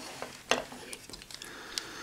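Hard plastic toy figure clicking and knocking as it is handled and turned by hand, with one sharper click about half a second in and a few lighter ones after.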